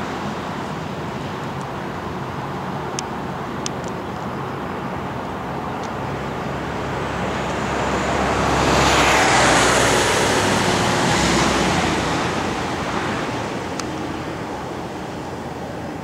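Steady road traffic noise, with a motor vehicle passing close by that swells up about eight seconds in, peaks and fades away over the next few seconds.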